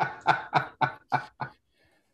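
A man laughing heartily: about six short "ha"s in an even run, fading out about a second and a half in.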